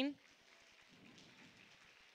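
Faint applause from a congregation: a steady, even patter of many hands clapping.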